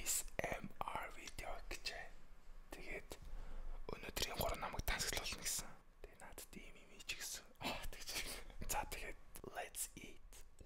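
A man whispering close to a microphone, in short phrases with pauses.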